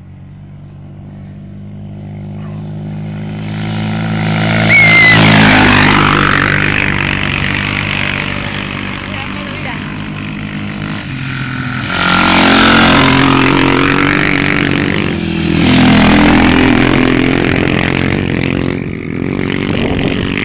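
Three racing motorcycles passing at speed one after another: each engine grows louder, peaks as it goes by and falls away, the first about five seconds in, the next two close together later on.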